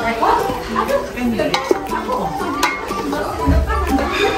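A spatula stirring raw chicken pieces in a rice cooker's inner pot, with a few sharp clicks of the spatula against the pot, under background voices and music.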